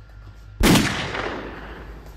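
A sudden loud bang about half a second in, its tail dying away over about a second.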